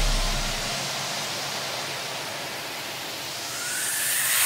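A white-noise sweep in an electronic pop track's break: a hiss that thins out and then swells back toward the next section. A deep bass note dies away in the first second.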